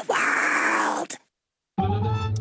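A cartoon voice blowing a long raspberry for about a second. After a short silence, a brief musical sting starts near the end.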